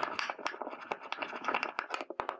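Nigella (kalonji) seeds being crushed with a pestle in a white ceramic mortar: rapid, irregular scraping and clicking of seeds ground against the bowl.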